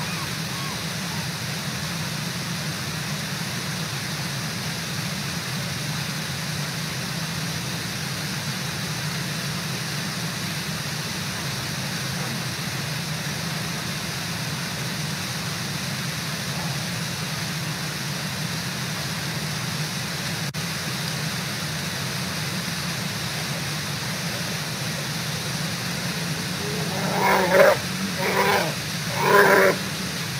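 Steady rushing of a river waterfall. In the last three seconds, three loud short sounds come from brown bear cubs right at the camera's microphone.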